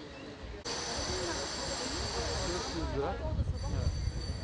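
Several people talking at once, overlapping voices from about a second in, over low rumble from the phone's microphone. A steady hiss with faint high whines comes in suddenly just under a second in.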